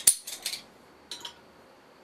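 Metal bottle opener being handled and fitted to a bottle cap: a quick cluster of sharp clinks and clicks right at the start, then a faint click about a second in.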